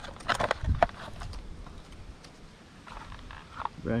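Hard plastic clicks and taps in the first second, then quieter handling rustle, as a new camera in a clear plastic sleeve is pried out of its moulded plastic packaging tray.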